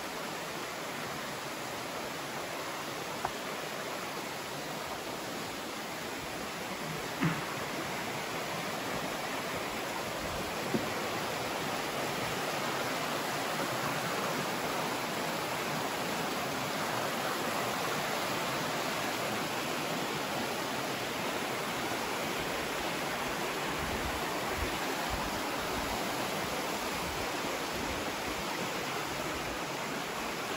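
A rocky mountain creek rushing over boulders and small cascades, a steady rush of water. A few faint knocks stand out, about three, seven and eleven seconds in.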